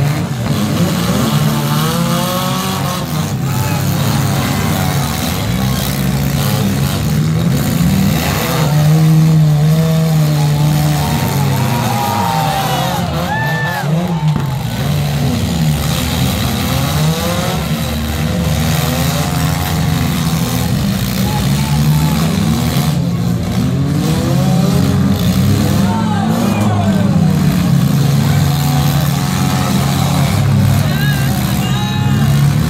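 Engines of several compact demolition-derby cars running and revving hard throughout as they drive and ram one another.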